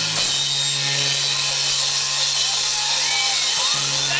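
Live rock band playing: electric guitar, bass and drum kit, with a low note held steadily underneath a wash of cymbals and drums.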